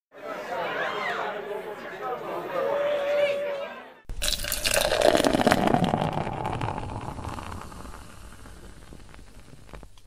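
Beer poured into a glass: a sudden splash of pouring liquid about four seconds in, its pitch sliding down, then settling into crackling fizz that slowly fades. Before it, a voice over the opening title.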